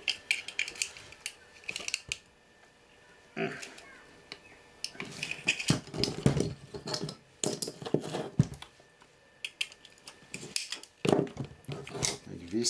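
Irregular metal clicks, clinks and scrapes as large pliers work at a small metal housing on a camera tube assembly, with handling knocks in between. The clatter comes in groups: a short one about a third of the way in, a dense run in the middle, and more near the end.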